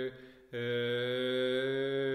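Man's voice in Orthodox liturgical chant. A note ends, and after a short pause about half a second in he holds one long, steady note on a single low pitch.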